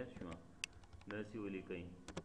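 Computer keyboard keys being typed: a few sharp key clicks in the first second, then a man's voice speaking briefly.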